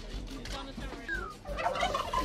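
White domestic turkey tom gobbling: a quick, broken run of notes that breaks out about one and a half seconds in.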